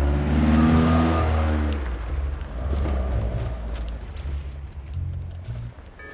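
A car engine running with its pitch falling over the first two seconds, as a car slows. Background music with low bass notes runs under it and carries on after.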